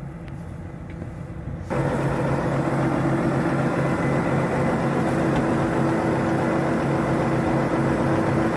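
Large John Deere articulated four-wheel-drive tractor's diesel engine idling steadily. It is faint at first, then much louder and fuller, heard up close beside the cab from just under two seconds in.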